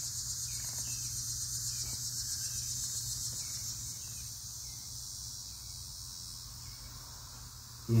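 Crickets chirping in a steady outdoor chorus, pulsing several times a second, easing off slightly about four seconds in, over a low steady hum.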